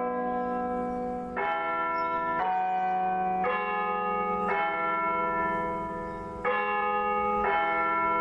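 Church bells ringing a slow sequence of pitched notes, a new note struck about once a second.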